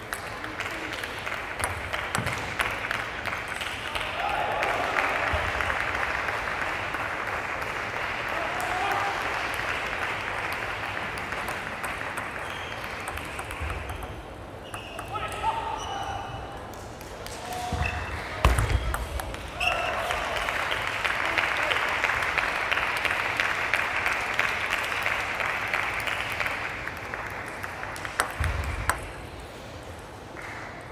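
Table tennis ball clicking off rackets and the table in rallies, over a steady wash of voices in the hall. A couple of heavier thuds come about two-thirds of the way through and near the end.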